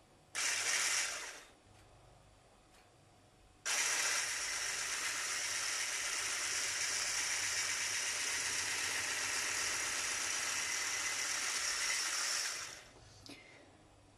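Hand blender with a whisk attachment running in a tall beaker of kefir batter on its lowest speed: a short burst about half a second in, then a steady run with a high whine from about four seconds in, which winds down and stops near the end.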